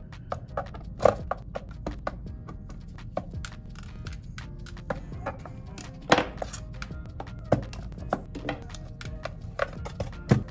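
Soft background music under scattered sharp clicks and taps of a screwdriver and gloved hands working the Xbox Series X's metal power-supply shield, the sharpest about a second in and about six seconds in.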